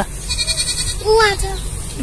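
Mostly a man's voice: a short exclamation about a second in. Before it comes a faint, rapid, high-pitched trill.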